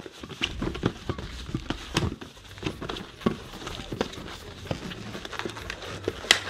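Latex modelling balloon being twisted and squeezed by hand into a balloon butterfly: irregular sharp rubber squeaks, creaks and rubs.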